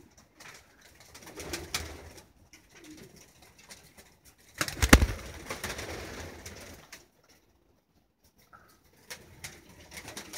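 Racing pigeons cooing in a small loft, with one loud, sudden clatter about halfway through.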